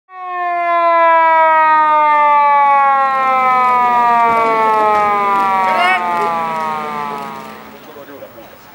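Police car siren sounding one long wail that falls slowly in pitch and fades out near the end, with a brief short rising chirp about six seconds in.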